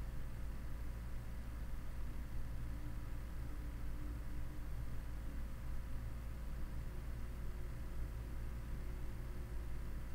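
Steady low background hum with faint hiss: room tone with no distinct event.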